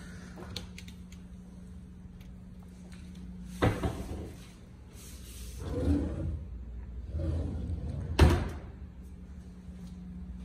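Kitchen cabinet doors and drawers being handled: a sharp knock a little before four seconds in, rubbing and sliding noise around six and seven seconds, and the loudest knock just after eight seconds, as a drawer or door is shut.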